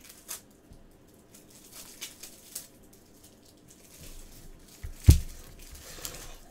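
Gloved hands handling a trading card and packaging on a table: faint rustles and small ticks, then one heavy thump about five seconds in.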